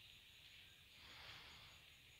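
Near silence: a faint steady hiss of background noise.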